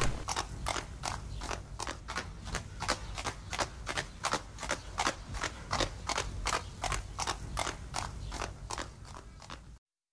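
Horse hooves clip-clopping on a hard street in a steady, quick rhythm of about four beats a second, cutting off suddenly near the end.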